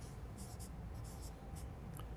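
Felt-tip marker writing on flip-chart paper: a series of short, quick scratchy strokes as numbers are written.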